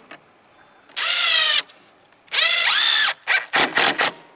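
Ridgid 18V cordless drill driving GRK cabinet screws into a wooden form strip: two runs of the motor, the second speeding up and then slowing down, followed by a few short bursts near the end.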